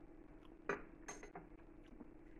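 A metal teaspoon clinks once, sharp and ringing, about two-thirds of a second in, followed by a few fainter clicks, over a faint steady hum.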